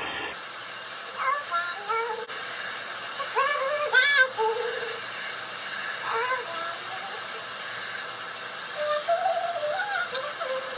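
A shower running with a steady hiss while a woman's voice sings a few short melodic phrases over it.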